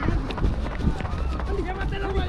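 Running footsteps thudding on a grass pitch over a steady low rumble on the microphone, with players shouting.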